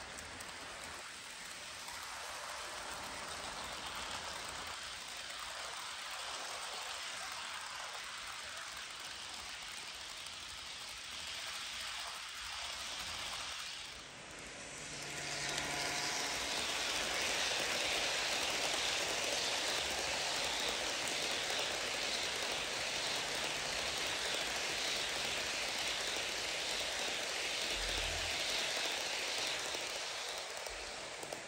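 HO scale model trains rolling on sectional track: a steady rushing hiss of metal wheels on the rails. It dips briefly about halfway through, then comes back louder as a passenger train runs close by.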